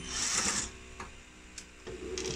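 Cordless drill-driver running as it backs out a screw holding the gas heater's circuit board. It is loudest for about the first half second, then runs on faintly.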